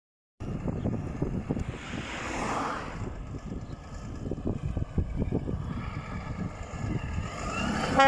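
Diesel engine of a grey Renault truck tractor unit with trailer, running as the truck pulls away and drives closer, its low rumble growing a little louder near the end.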